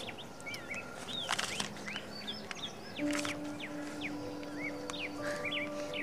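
Birds chirping repeatedly in short sweeping calls, with a steady held low music note coming in about halfway through.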